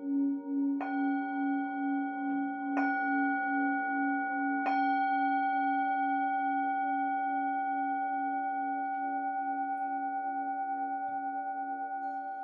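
Singing bowl ringing with a pulsing low hum, struck three times about two seconds apart in the first five seconds, then left to ring and slowly fade.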